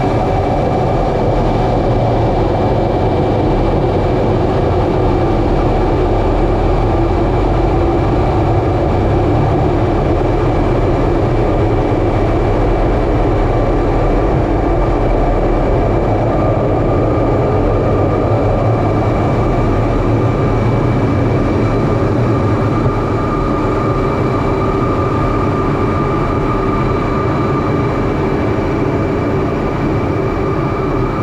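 Jet engine and airflow noise heard inside an F/A-18 Hornet's cockpit during its takeoff roll and climb-out from its twin turbofans: a loud, steady rumble with a thin, high whine running over it.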